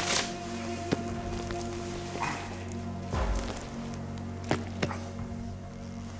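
Soft background score of sustained, steady tones, with a few faint clicks and rustles of handling.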